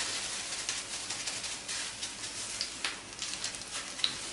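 Egg-and-yellow-cheese patties frying in hot fat in a frying pan: a steady sizzle with occasional crackles. The sizzle is the sign that the fat is hot enough for frying.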